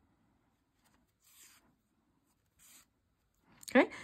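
Two faint, brief rustles of acrylic yarn and knitted fabric as a yarn needle is drawn through the stitches in hand-sewing, with near silence between them.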